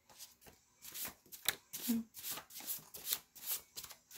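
Tarot cards being shuffled by hand: a quick, uneven run of soft card slaps and rustles.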